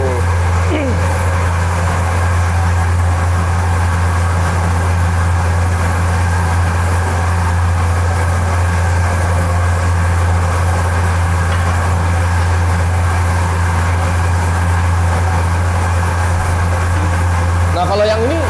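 Electric feed mill machine running steadily, a loud, unchanging low hum as it mixes pig feed.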